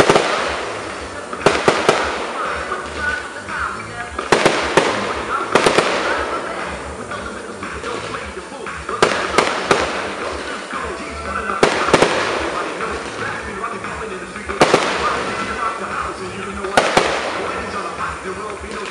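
Aerial firework shells bursting overhead: sharp bangs every second or two, often in quick pairs or clusters, each trailing off in an echo.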